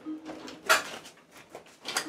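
Quiet handling sounds of a kitchen drawer being opened and utensils shifted inside it, with one brief louder rustle about two-thirds of a second in.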